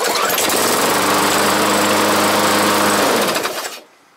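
Walk-behind petrol lawn mower's small engine restarted without priming, catching at once and running steadily. About three seconds in it is shut off and winds down.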